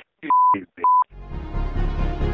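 The last words of a man's voice over a phone line, cut by two short 1 kHz censor bleeps over his swearing. About a second in, music with a deep, pulsing low end begins.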